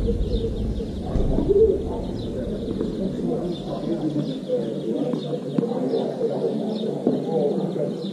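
Birds chirping and cooing, with short chirps repeating throughout and lower calls, mixed with faint distant voices and a few light knocks.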